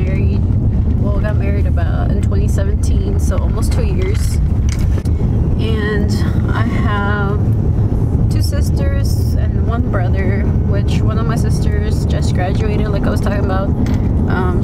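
Steady low rumble of road and engine noise inside a moving car's cabin, with a woman's voice over it.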